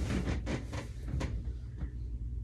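A few brief soft knocks and rustles, about four in two seconds, over a low steady hum: movement and handling noise on the bed.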